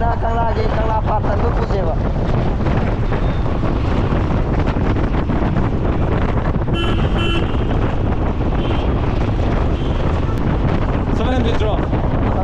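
Steady wind rush on the microphone, with motorcycle engine and road noise, while riding through town traffic. A vehicle horn gives two short beeps about seven seconds in.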